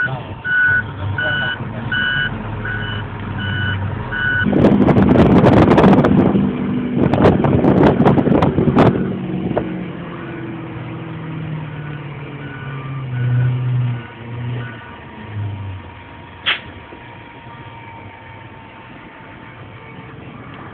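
Garbage truck's reversing alarm beeping evenly, about one and a half beeps a second, over a low engine rumble. About four seconds in, a loud rushing, clattering noise covers it for several seconds, and the beeping comes back fainter later on.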